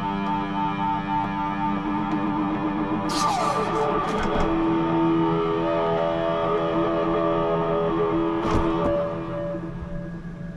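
Guitar solo: long held, ringing notes, with a slide down in pitch about three seconds in. The playing dies away near the end.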